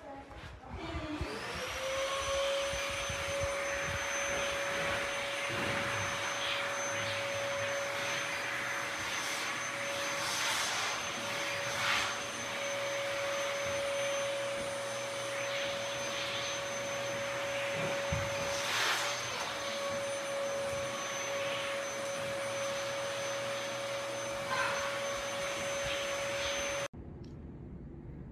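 Orison low-profile bladeless ceiling fan spinning up: a whine that rises in pitch over the first couple of seconds, then settles into a steady whine over a rush of moving air. It cuts off suddenly near the end.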